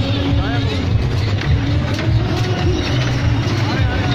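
Children's fairground ride running: toy cars rolling around a rail track with a steady low rumble and scattered clicks, under crowd chatter and children's voices.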